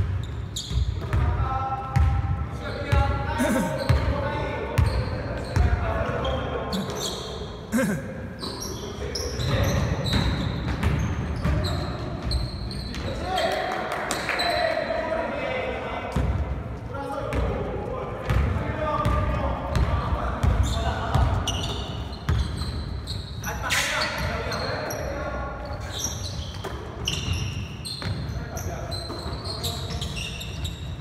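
Basketball being dribbled and bounced on a hardwood gym floor, a run of irregular thuds throughout, echoing in a large hall, with players' voices calling out.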